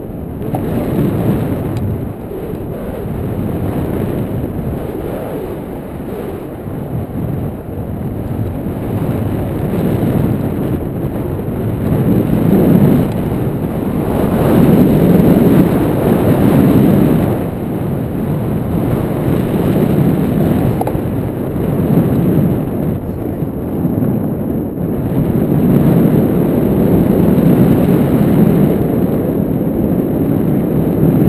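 Wind noise on the camera microphone of a paraglider in flight: a loud, low rushing rumble that swells and eases in gusts every few seconds.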